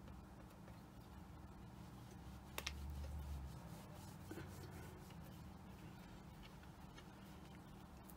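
Very quiet room tone with a faint steady low hum, and a single soft tap about two and a half seconds in.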